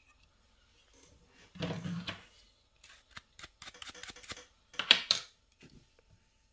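Handling noise from a hair trimmer held in the hand, with its motor not running: a short rustle about one and a half seconds in, then a quick run of sharp clicks and taps, loudest about five seconds in.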